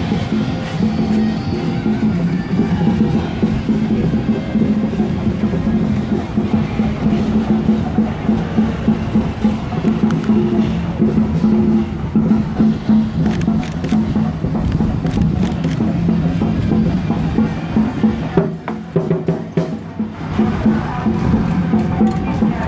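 Loud, continuous procession music with drums and percussion playing, dipping briefly near the end.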